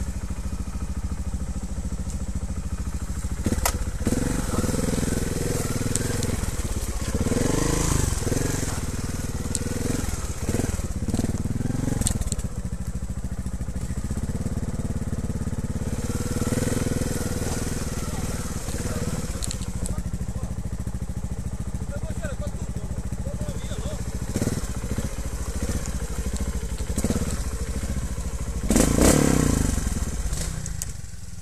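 Trials motorcycle engine running at low speed and revving in short bursts as the bike is ridden over a rough forest trail, with knocks and clatter from the bike over the ground; a louder burst of revs near the end.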